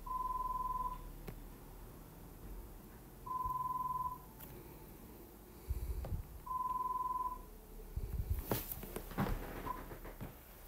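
Electronic beep, a steady single-pitched tone under a second long, sounding three times about three seconds apart, with a short fourth beep near the end. A few low thumps and clicks come in the second half.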